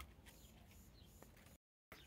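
Near silence: faint outdoor background with a few faint short high chirps and ticks, broken by a moment of dead silence shortly before the end.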